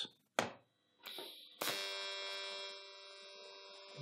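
A click, then about one and a half seconds in an AC TIG arc from an HTP 221 welder strikes and buzzes steadily, dropping a little in level partway through.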